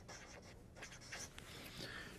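Faint scratching of handwriting: a few short strokes of a pen across a writing surface.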